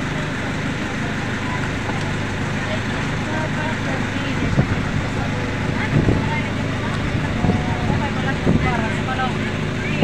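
Motorized sampan's engine running steadily at low speed, with water churning around the hull and people talking faintly in the background.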